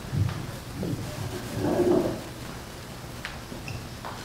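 Handheld microphone being passed from one panelist to another, giving a few muffled handling bumps and rustles.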